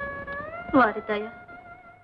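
Film soundtrack: a held instrumental note from the background score that steps up in pitch early on, with a brief vocal sound just under a second in whose pitch falls sharply.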